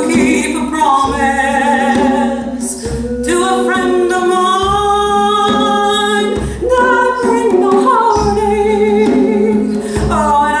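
A woman singing a slow, sustained melody live, accompanied by a hand drum struck with the hands in a steady low beat about once every second or so.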